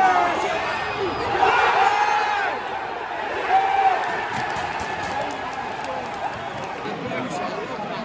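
Football stadium crowd shouting, with several nearby fans' voices rising and falling loudly over a steady crowd din.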